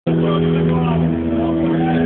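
A band's amplified instruments holding a steady sustained chord that shifts to other notes about a second in, under the chatter of a crowd.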